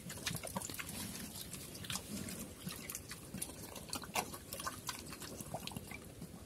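Pig eating watery slop from a bowl with its snout in the liquid: a steady run of irregular wet slurps and smacks.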